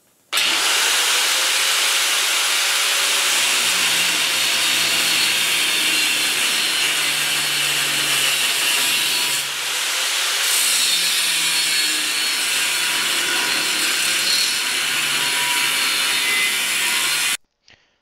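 4½-inch angle grinder with a 1/16-inch cut-off wheel cutting through a steel tube, a loud steady grinding with a brief dip about ten seconds in. It starts abruptly and cuts off suddenly shortly before the end.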